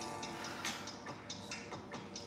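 Faint, regular ticking, about three ticks a second, over quiet background music.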